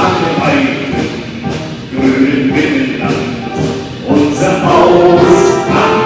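A military wind band plays with a solo singer on microphone and a group singing along, in held sung phrases that restart about two and four seconds in.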